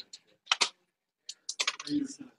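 Typing on a computer keyboard: a couple of quick key clicks about half a second in, then a faster run of keystrokes near the end.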